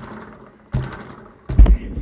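A sharp tap followed by breathy hiss, then a louder low thump near the end.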